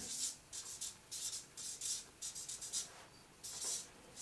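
Marker pen writing on a paper sheet: a quiet run of short, high, scratchy strokes as an arrow and a word are written.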